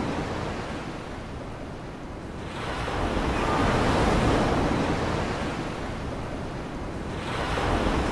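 Ocean waves rushing, a steady surge that swells about three seconds in, eases off, and builds again near the end.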